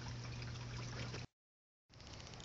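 Steady outdoor background hiss with a low steady hum, which cuts out abruptly to dead silence a little past halfway.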